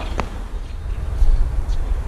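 Low, uneven outdoor rumble, like wind on the microphone or distant city traffic, that swells a little around the middle. A single sharp click comes just after the start.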